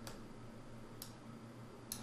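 Faint clicks of a computer mouse, three over two seconds, over a quiet low room hum.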